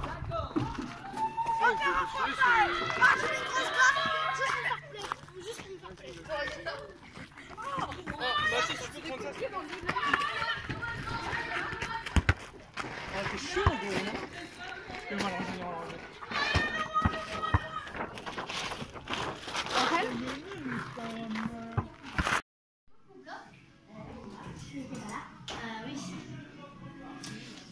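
Children's voices shouting and calling out as they play, cutting out suddenly for a moment about three-quarters of the way through.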